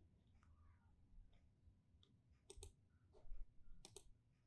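Two pairs of quick computer-mouse clicks, about a second and a half apart, over faint room tone.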